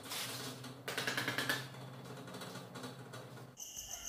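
Steel trowel scraping and smoothing a wet cement mortar bed on a concrete floor, in a few short scratchy strokes during the first second and a half, then fainter, over a steady low hum.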